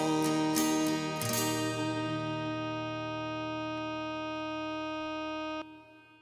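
Closing bars of a song: acoustic guitar strums over a long held note on bagpipes with drones. The pipes stop abruptly about five and a half seconds in, leaving the guitar to ring out and fade.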